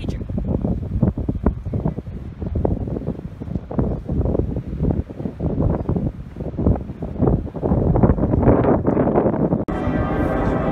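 Wind buffeting the microphone outdoors: loud, gusty rumble that swells near the end and cuts off suddenly just before the close.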